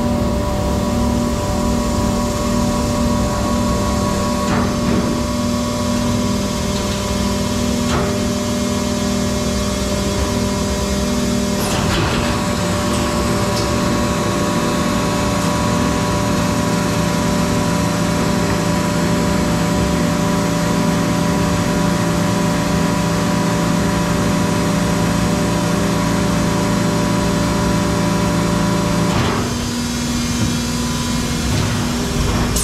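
Plastic injection moulding machine running: a loud, steady machine drone made of several held tones. A sharp clunk about twelve seconds in shifts the tones, as the machine moves to another stage of its cycle, and they change again near the end; lighter knocks come at about four and eight seconds in.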